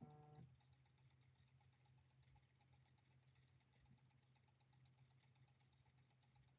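Near silence: room tone with a low steady hum, and one brief pitched sound lasting under half a second right at the start.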